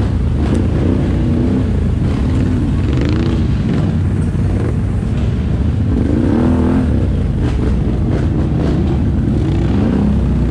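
ATV engine running steadily, its pitch swinging up and down with changes of throttle, most clearly about three seconds in and again past six seconds.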